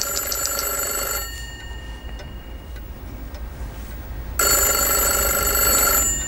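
Desk telephone ringing for an incoming call: one ring ends about a second in, then after a pause of about three seconds a second ring begins.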